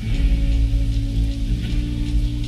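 Live rock band playing an instrumental passage: electric guitars and bass holding chords over drums with ringing cymbals, with a chord change a little past halfway.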